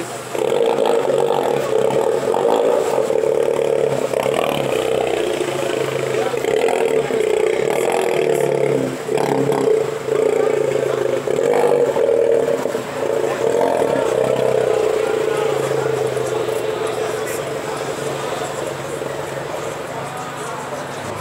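Citroën DS3 hatchback's engine running steadily, its note wavering a little. People are talking over it.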